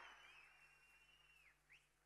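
Near silence: a pause in the audio.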